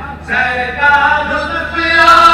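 A man chanting devotional verses unaccompanied into a microphone, in long held, wavering notes. It starts after a brief pause and grows louder toward the end.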